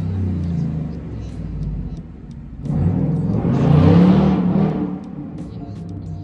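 Low rumble of a passing motor vehicle, swelling to its loudest about three to five seconds in and then fading.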